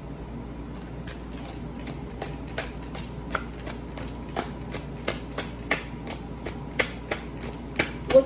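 A deck of oracle cards shuffled by hand: irregular crisp clicks and taps, a few a second, coming faster and sharper in the second half.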